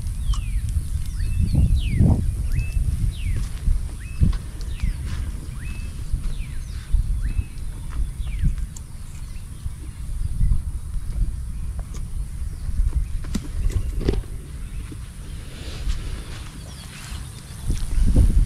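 Wind buffeting the microphone in an irregular low rumble, with birds calling in many short chirps that mostly fall in pitch, over a steady high hiss. A few knocks of handling come through, one about two seconds in and another near the end.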